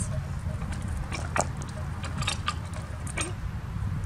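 A peavey's steel hook and spike working a log and the log rolling over gravel: a few short knocks and crunches, the sharpest about a second and a half in, over a steady low rumble.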